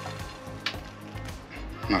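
Sesame seeds sprinkled by hand onto sticky, sauce-coated chicken wings, a light scattered patter with one brief tick early in the first second, over faint background music.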